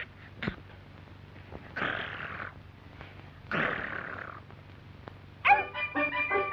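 A cartoon puppy's voice effects: two rough, unpitched dog-like growl noises about a second and a half apart, after a short click. Music with strings comes in near the end.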